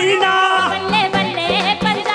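A Punjabi song performed live: a voice sings with gliding, ornamented pitch over a band with a steady drum beat.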